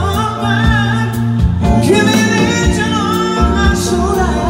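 Live rock-band music with singing: electric guitars, bass guitar and a drum kit keeping a steady beat under the vocal line.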